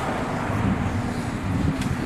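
A motor vehicle engine running steadily, with a low hum under a noisy outdoor haze.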